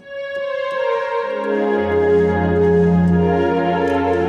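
Yamaha portable keyboard playing slow, sustained chords: a held right-hand chord sounds at once, and deeper left-hand bass notes join about a second in and again just before two seconds, all ringing on together.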